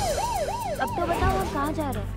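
A siren yelping: a quick rising-and-falling wail, about three sweeps a second, with a second overlapping wail joining about a second in.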